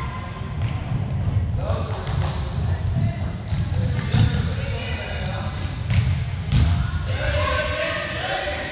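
Basketball bouncing on a hardwood gym floor during play, with repeated thuds, short high sneaker squeaks and players' and spectators' voices in a large gym.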